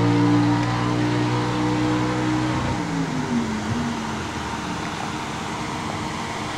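A car engine idling with a steady, even hum that stops about two and a half seconds in. A brief wavering tone follows, then a steady rushing background of outdoor engine noise.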